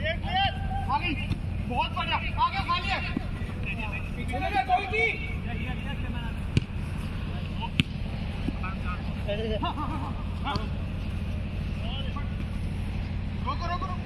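Footballers shouting and calling to each other during play: short shouts, thickest in the first few seconds and again a little after the middle. Two sharp thumps of the ball being kicked come about halfway through, over a steady low rumble.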